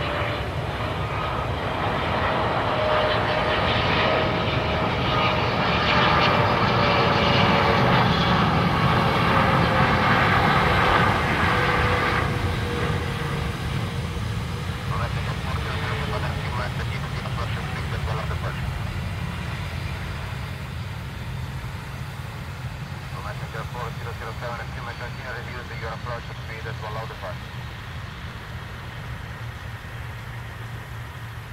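Jet airliner's engines passing, with a steady whine whose pitch slowly falls. It grows louder to a peak about ten seconds in, then fades away over the rest of the time.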